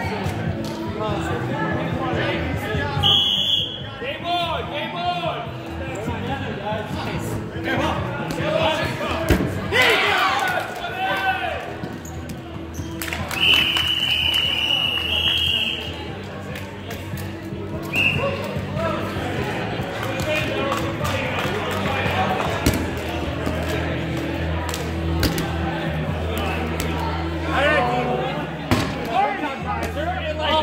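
Rubber dodgeballs bouncing and smacking on a gym's hardwood floor, over players shouting and background music. A referee's whistle blows three times: a short blast about three seconds in, a long blast of about two seconds near the middle, and another short one soon after.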